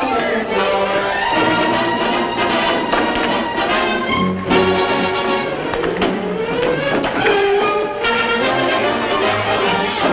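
Orchestral film score led by brass, playing busy, fast-changing figures with a few sliding notes about halfway through.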